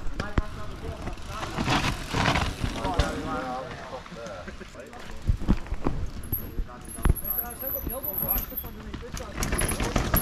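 Riders' voices talking and calling at a distance, with scattered knocks and rattles from mountain bikes rolling over dirt and roots. A bird chirps high up from about six seconds in.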